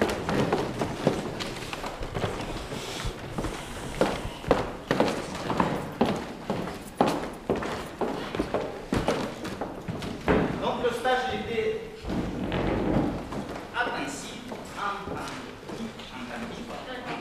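Voices in a hall with irregular knocks and thumps, one or two a second. A voice stands out more clearly about ten seconds in and again near the end.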